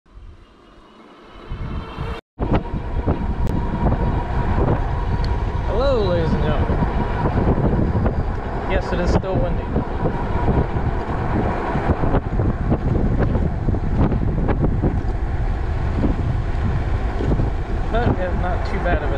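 Wind buffeting the microphone during an e-bike ride, a heavy low rumble that starts after a quiet opening and a brief cut-out about two seconds in.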